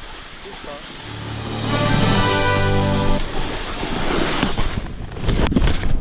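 Snowboard sliding and scraping down a snow slope, with a steady buzzing drone from about one to three seconds in. A few sharp knocks come near the end as the rider loses balance.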